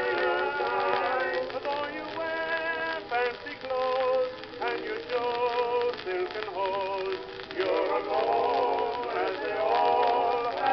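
Music from an acoustically recorded 1920 shellac 78 rpm record: a male vocal quartet with orchestral accompaniment, held notes with vibrato.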